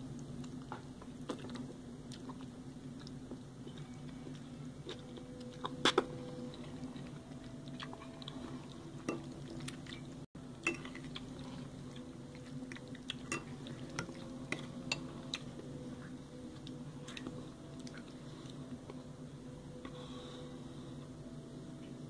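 A person chewing a mouthful of ramen noodles: scattered soft mouth clicks, sharpest about six seconds in, over a steady low hum.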